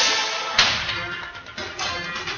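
A sudden sharp crack, a sound effect about half a second in, over background music.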